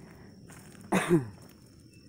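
A single short cough about a second in, a sharp burst with a brief falling voiced tail, over faint footsteps on a dirt trail and a thin steady high insect drone.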